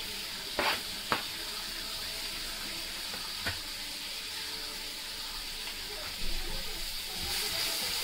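Chopped onions sizzling in hot oil in a steel kadhai, stirred with a silicone spatula: a steady high frying hiss, with a few soft knocks in the first few seconds.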